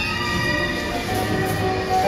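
Tango dance music playing steadily, a passage of long held notes.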